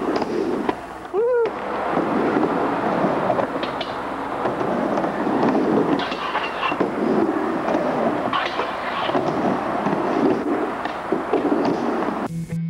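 Skateboard wheels rolling back and forth on a halfpipe surfaced with rusty sheet metal: a continuous rough rumble broken by clacks and knocks from the board and trucks. A short shout rises and falls about a second in.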